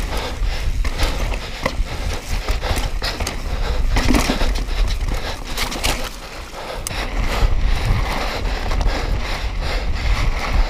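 Mountain bike ridden fast down a rocky dirt trail: tyres on dirt and stones, and the bike clattering and rattling over bumps with many sharp knocks, under steady wind buffeting on the camera's microphone. It crosses a wooden plank boardwalk about six seconds in, where the noise briefly drops.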